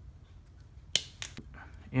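Hobby plastic cutter (side nippers) snipping through a red plastic part: one sharp snap about a second in, followed by a weaker click.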